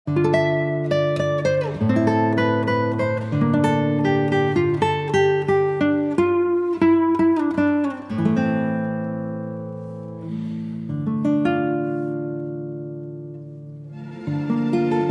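Background music on acoustic guitar: plucked notes over low held bass tones, starting suddenly. From about eight seconds in the notes are left to ring and fade, with a few picked in between.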